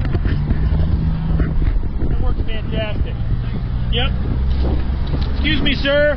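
A car engine running steadily, a low rumble with a constant hum, with brief snatches of a voice around the middle and near the end.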